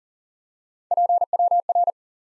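Morse code sidetone, a single steady beep keyed at 40 wpm, sending the abbreviation PWR (power) as three quick groups of dits and dahs starting about a second in.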